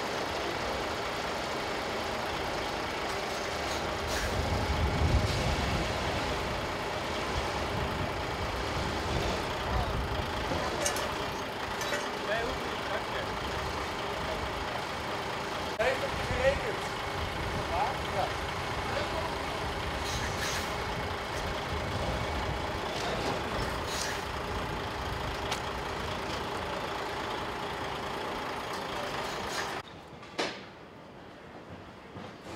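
Heavy truck's diesel engine idling steadily, with a deeper rumble swelling about four to six seconds in. A few sharp knocks come near the middle.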